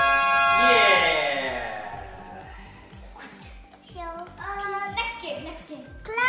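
Background music that ends about two seconds in with a falling glide, followed by a young girl's voice singing wordless phrases.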